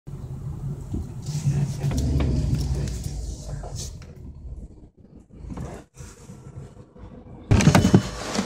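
Car engine running low inside the cabin as the car pulls up, then fading away about halfway through. Near the end there is a loud, sudden clatter as the driver's door is unlatched and opened.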